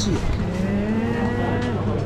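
A person's voice holding one long, steady hum for about a second and a half, sagging slightly in pitch at the end, over a constant low background hum.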